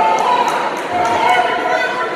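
Raised voices of coaches and spectators calling out around a wrestling mat in a gym hall, with a few brief sharp sounds among them.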